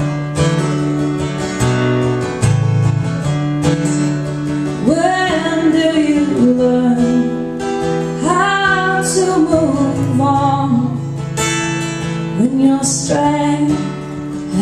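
Acoustic guitar strummed in steady chords, with a woman's singing voice coming in about five seconds in.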